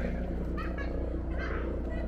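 Faint chatter of other people's voices in the distance over a steady low hum.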